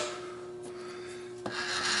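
Milling machine running with a steady hum; about a second and a half in, a click, then a louder rasping noise joins.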